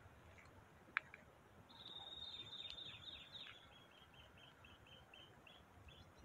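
A small songbird singing faintly: a quick high run of notes, then a string of short repeated notes, about four a second. A single sharp click sounds about a second in.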